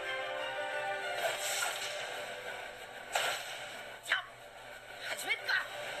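Trailer soundtrack: music with held tones, then sharp hits about halfway through and again a second later, and a short shout of 'Ha!' with a laugh near the end.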